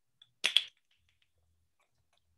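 Wooden Jacob's ladder toy flipped, its blocks clacking: two sharp clacks close together about half a second in, then a few faint ticks.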